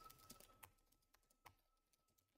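Faint computer keyboard typing: a few soft, scattered key clicks over near silence.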